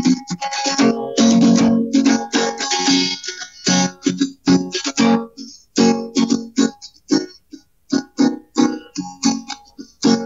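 Acoustic guitar strummed in a steady rhythm, playing a song.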